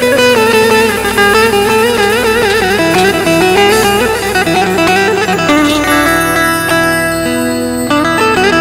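Live instrumental folk music: an electric saz plays a gliding, ornamented melody, with synthesizer and drums behind it.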